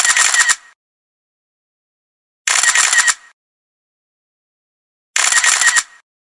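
Camera shutter sound effect, a quick run of mechanical clicks under a second long, repeated three times about two and a half seconds apart with dead silence between.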